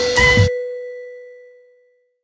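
End of a logo outro jingle: the beat cuts off about half a second in, leaving a single bell-like chime that rings on and fades away.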